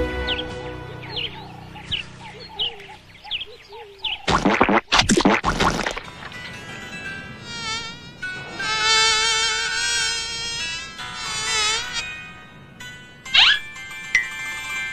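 Cartoon sound effect of a buzzing fly, its drone wavering up and down for several seconds, coming after a loud whoosh about four seconds in. A quick rising zip sounds near the end.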